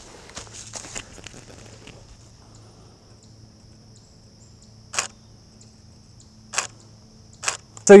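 Camera shutter firing three times, sharp single clicks about a second or two apart, during a portrait shoot, over a faint steady high-pitched drone.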